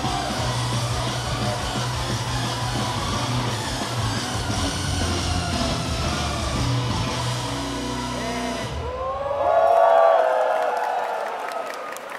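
Idol pop song with a heavy bass beat played loud over the stage PA; it stops abruptly about nine seconds in. Loud cheering and high-pitched shouts follow.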